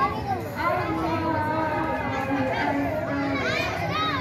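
Many children's voices calling out and chattering together at once, some voices held and some sliding up in pitch, in a noisy crowd.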